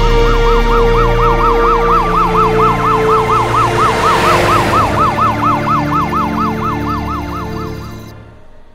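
Electronic police-vehicle siren in a fast yelp, its pitch swinging up and down about four times a second, over a held musical underscore; a rush of noise swells around the middle and the siren fades near the end.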